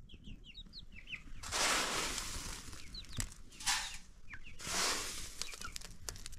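Chickens giving short, high chirps in quick succession, then three bursts of dry rustling: a long one about a second and a half in, a short one near the middle and another toward the end.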